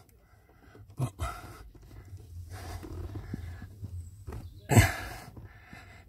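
A man's low, drawn-out straining grunt and breathing as he tries to force a connector plug onto the clutch position sensor in a cramped footwell, with a louder, sharp burst of breath about five seconds in.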